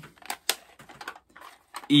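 Plastic cassette cases clicking and clacking against each other as they are shuffled in the hand: a scatter of light, irregular clicks.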